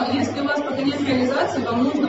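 Several people's voices murmuring at once.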